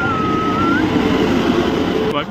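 Electric locomotive pulling into the platform, its passing rumble loud and steady. A thin whistle dips and rises in pitch during the first second.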